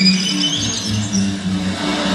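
Orchestral music with solo violins: the violins climb into a high rising slide at the very start, then the orchestra holds lower notes, with deep bass notes coming in about half a second in.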